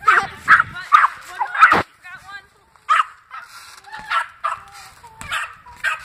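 A dog barking: a quick run of short barks in the first two seconds, then single barks about a second apart.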